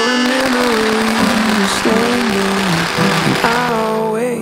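A string of firecrackers going off in a fast, dense crackle for about three and a half seconds, then fading, under a song with a sung melody.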